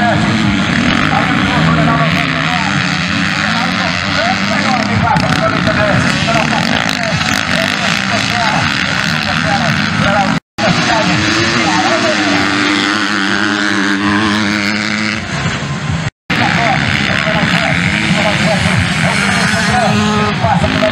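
Several 250cc motocross bikes racing on a dirt track, their engines revving up and down as they accelerate past. The sound cuts out completely twice for a moment, about halfway through and again about three-quarters of the way through.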